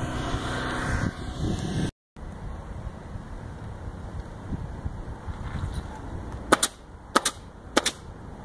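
Pneumatic roofing nailer firing nails through asphalt shingles: three sharp shots about two-thirds of a second apart near the end.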